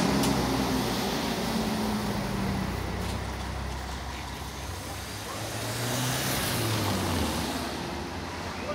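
Diesel coach engine running as the coach pulls away up a street, its sound fading as it moves off. A low engine note rises in pitch about five to seven seconds in, over general street traffic noise.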